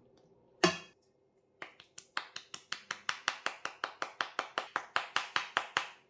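One sharp knock, then a fast, even run of sharp taps, about five a second, growing louder.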